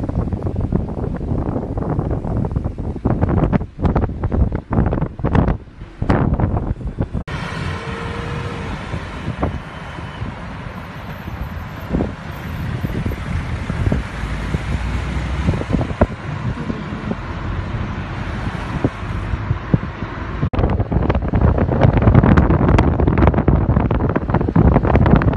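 Wind buffeting the microphone, over car and traffic noise from a moving car. The sound changes abruptly twice where shots are cut together, and the heaviest wind buffeting comes near the end.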